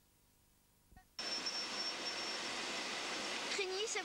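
About a second of near silence, then after a small click a steady rushing seaside noise cuts in suddenly, with a thin high-pitched whine running through it. A boy's voice begins near the end.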